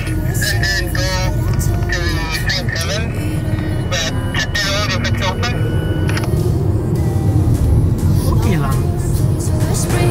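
A man talking, partly into a handheld two-way radio, over the steady low road rumble inside a driving car's cabin.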